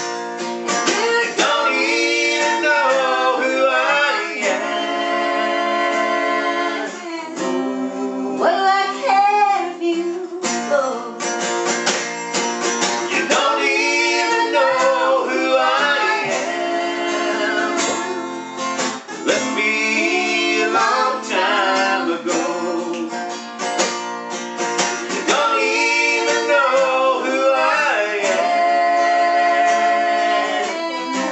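Acoustic guitar strummed as accompaniment to a man and a woman singing a country song together.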